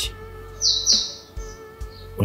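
A bird's short, high double chirp a little over half a second in, over background music with low held notes.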